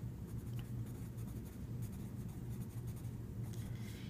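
Green colored pencil scratching across lined notebook paper as a phrase is handwritten, a soft continuous scratching over a low steady hum.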